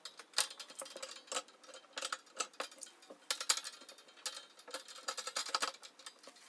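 Light, irregular clicks and clinks of keychain clasps and acrylic charms knocking against a metal wire grid as keychains are hung on its hooks, with a sharper click about half a second in.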